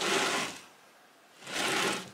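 Homemade wooden milling machine's spindle carriage being lowered in short strokes: a soft sliding rush at the start and again near the end, each about half a second long.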